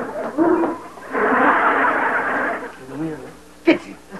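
Short vocal sounds and a dense noisy stretch of voice-like sound, then a single sharp smack near the end.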